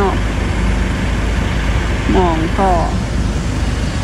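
Steady low rumble of an idling vehicle engine, running evenly under the speech.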